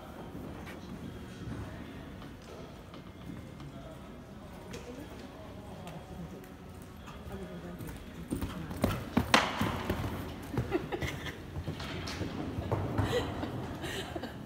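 Hoofbeats of a horse cantering on an arena's sand footing, faint at first, then loud thuds from about eight seconds in as it passes close, with one sharp knock about nine seconds in.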